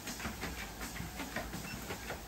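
Motorized dog treadmill running with a steady low hum while a large Presa Canario walks on the moving belt, its paws making repeated short footfalls.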